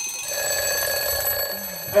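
A steady, alarm-like ringing made of several high tones held at once, swelling a little about a third of a second in.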